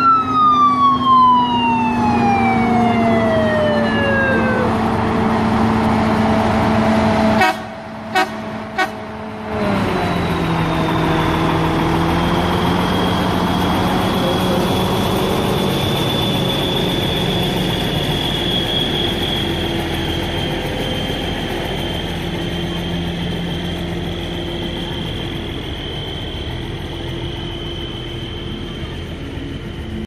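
A vehicle siren winds down in one long falling wail over the first few seconds, over the steady drone of slow-moving trucks. The sound drops away for about two seconds, broken by two clicks. Then heavy truck engines run on with a steady low hum and a faint high whine.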